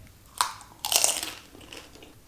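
A sharp crack, then a longer, louder crunch about a second in: a crisp, hollow fried golgappa shell breaking.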